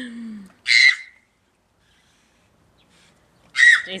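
A toddler's excited cries of "ah!": a short call falling in pitch, then a brief, loud, high shriek about a second in.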